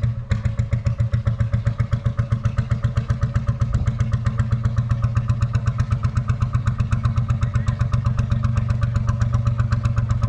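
Kromhout single-cylinder hot bulb engine running with a steady, fast, even chugging beat.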